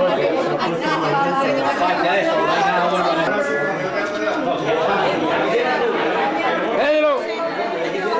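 Crowd chatter: many people talking at once in overlapping conversations, with one voice briefly rising and falling above the rest about seven seconds in.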